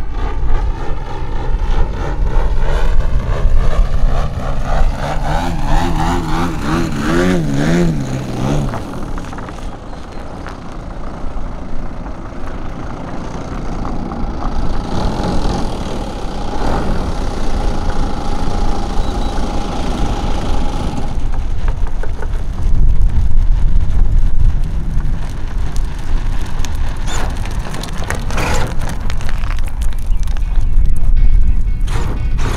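Gasoline two-stroke DA 120 engine with tuned pipes on a giant-scale RC plane, its pitch sliding and wavering as the plane flies by and throttles back, then running steadily at low throttle on the ground in the second half. Wind rumbles on the microphone throughout.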